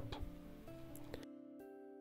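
Faint background music: a few soft held notes that change every half second or so.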